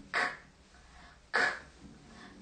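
A woman voicing the phonics sound of the letter K twice, short sharp unvoiced 'k' sounds a little over a second apart, imitating the crunch of a carrot being bitten.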